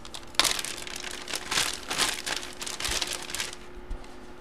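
Clear plastic bag crinkling in a rapid run of crackles as a jersey is handled and worked into it; the rustling stops near the end.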